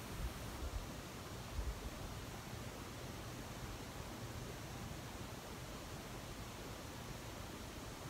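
Faint steady hiss of room tone in a small room, with a few soft low bumps in the first two seconds.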